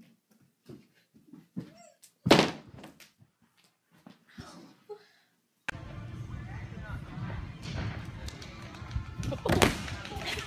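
A single heavy thud about two seconds in. After a cut, the steady noise of a gymnastics gym, with a second loud thud near the end as a gymnast lands on a padded crash mat.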